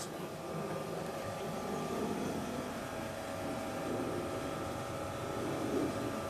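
Steady background noise with a faint even hum and no distinct events.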